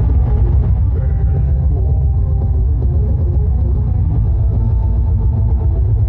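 Live band playing an instrumental passage, with electric bass and drum kit heavy in the low end and no singing.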